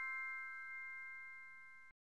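Bell-like chime ringing out: several clear tones, struck just before, fading slowly and cut off abruptly near the end.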